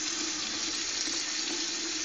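Water running steadily from a bathroom tap into a sink.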